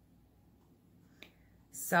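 Mostly quiet room tone with a single sharp click a little past a second in, then a woman starts speaking near the end.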